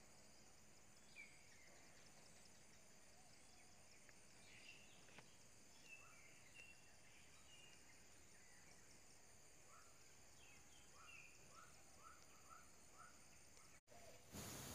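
Near silence: faint outdoor ambience of a steady high insect drone with scattered bird chirps, and a short series of evenly spaced bird notes near the end.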